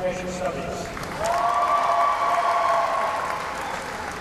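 Audience applauding in a large hall. About a second in, a steady two-pitched tone starts and holds for about two seconds over the clapping.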